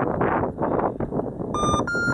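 Wind buffeting the microphone. Near the end come two short electronic beeps in quick succession, the second slightly higher, from an F3F race timing system marking the glider's crossing of a turn base.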